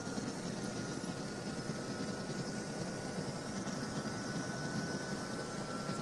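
Helicopter in flight heard from inside the cabin: a steady engine and rotor drone with a faint, steady high whine.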